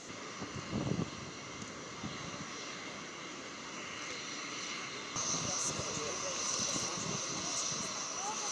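Aircraft engine running on a carrier flight deck, a steady noise with a low rumble about a second in. A high, steady whine comes in about five seconds in and holds.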